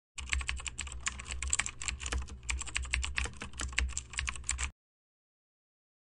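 Rapid keyboard typing: a fast, uneven run of key clicks over a low hum that lasts about four and a half seconds, then cuts off abruptly into silence.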